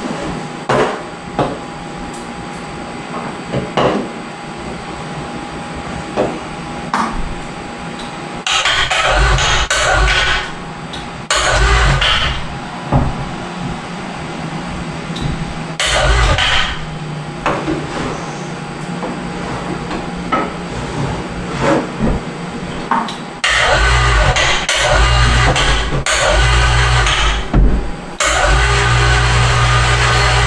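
Overhead electric hoist motor running in bursts as it lifts a boat engine on straps. It starts and stops several times, with knocks and clinks of handling in between, and runs longer near the end.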